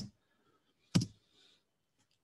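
A single sharp click about a second in, from a computer key or button pressed to advance a presentation slide, over quiet room tone.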